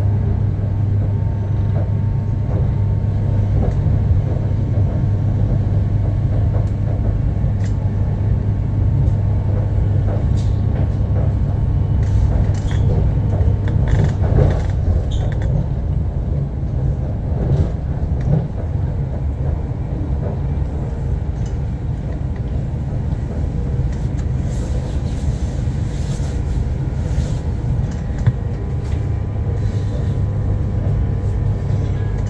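Cabin running noise of an Elizabeth line Class 345 electric train at speed: a steady low rumble and hum, with scattered sharp clicks and a cluster of them near the end.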